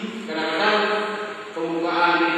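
A man's voice speaking into a handheld microphone, drawing out his syllables in long held tones.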